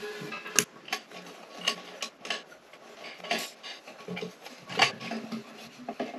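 Irregular light clicks and clinks of a tightening tool and nuts on a toilet's tank bolts against the porcelain, as the tank-to-bowl bolts are tightened by hand. The knocks come singly, about one or two a second.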